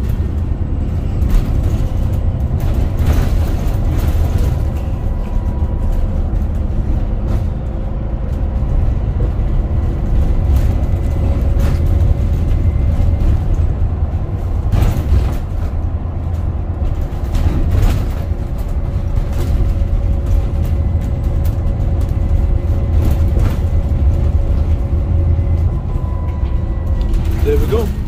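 Bus engine running, heard from inside the passenger cabin of a double-decker bus: a steady low rumble with a faint whine that comes and goes, and now and then a knock or rattle.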